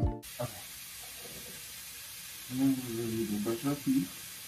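Background music cuts off just after the start, leaving the steady hiss of a bathroom faucet running into the sink. A few brief pitched notes sound in the second half.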